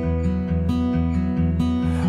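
Song music: acoustic guitar strumming chords, the notes held steady with regular chord changes.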